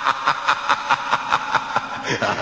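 A person laughing in an even run of short chuckles, about five a second.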